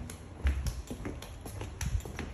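Footsteps in flip-flops on a hard plank floor: rubber sandals slapping and clicking against the heels a few times a second. Heavier footfalls thud about half a second in and near the end.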